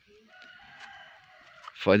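A rooster crowing faintly: one long drawn-out call that sags slightly in pitch toward its end.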